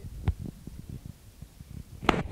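Microphone handling noise: low, irregular thumps and rubbing as the phone moves against clothing, with one sharp knock about a quarter second in.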